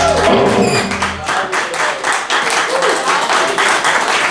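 The last chord of a double bass and an electric guitar rings out and stops about a second and a half in, overlapped and followed by audience applause and voices.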